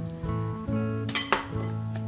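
Background guitar music plays throughout. A couple of sharp clinks come a little after a second in, from a wooden spoon and a plastic bowl knocking against a glass mixing bowl as flour is stirred into butter and sugar.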